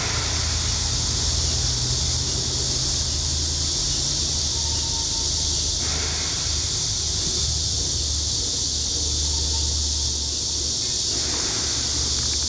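Steady outdoor background noise: a loud, even high hiss over a low rumble, with no distinct events.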